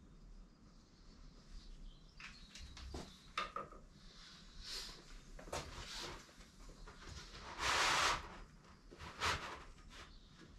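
Footsteps and handling noises as a person moves over and takes hold of a long sheet of paper on a concrete floor: a few light knocks and clicks early on, then short swishes, with the loudest swish, lasting under a second, about eight seconds in.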